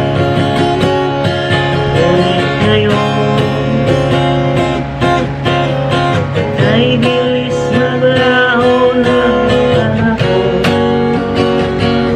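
Steel-string acoustic guitar strummed in a steady rhythm, with a man's voice singing along.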